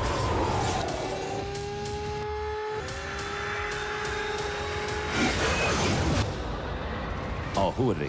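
Trailer sound design over music: a swooping whoosh, then a long, slowly rising drone over a low rumble. A heavy hit comes about five seconds in and another near the end.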